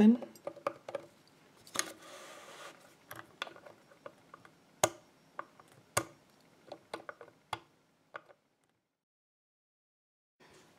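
Needle-nose pliers clicking and scraping against a small brass retaining pin set in a metal lock body as the pin is gripped and pulled: a run of sharp metallic clicks with a short scrape about two seconds in, the loudest clicks near five and six seconds in. The pin holds fast and does not pull free.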